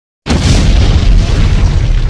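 Explosion sound effect: a sudden loud boom about a quarter second in, going on as a deep, rumbling blast.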